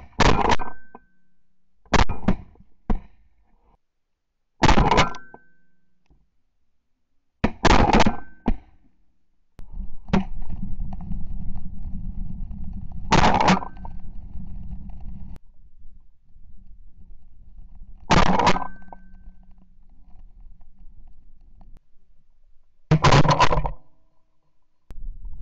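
Shotgun shots fired from the gun carrying the camera, seven loud sharp blasts a few seconds apart, with a stretch of steady low rumbling noise between the fourth and fifth.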